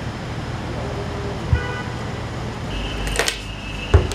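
Outdoor traffic noise with a sharp thump about a second and a half in. Near the end the background changes to a steady high whine with clicks and a loud knock.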